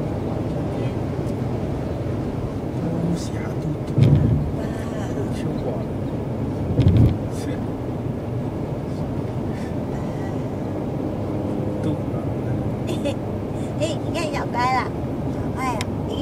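Steady road and engine noise inside a moving car's cabin, with two brief low thumps about four and seven seconds in. Near the end come a few short, high, wavering vocal sounds.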